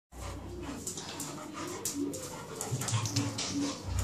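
A beagle and a cocker spaniel play-fighting, with short low growls and whines. Sharp clicks and scuffles run through it, busiest in the second half.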